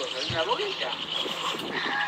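Indistinct voices from a video clip played back through a phone's small speaker, with a short low thump about a third of a second in.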